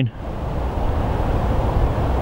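Steady low rumble of wind buffeting the microphone, with no distinct strokes or tones.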